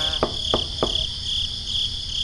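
Crickets chirping in a steady, pulsing high trill, with three sharp clicks in the first second and a low rumble underneath.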